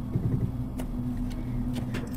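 Steady low electrical hum on the microphone, with a few faint computer mouse clicks as an item is picked from an on-screen list.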